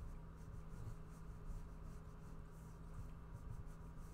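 Pencil strokes scratching lightly on drawing paper in short, irregular passes, over a faint steady low hum.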